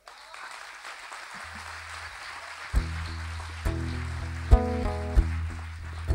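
Amplified solo acoustic guitar starting a song's intro: a low note about a second and a half in, then chords from about three seconds in, with a few sharp, loud accented strums. Before the guitar comes in, a faint noise of audience applause dies away.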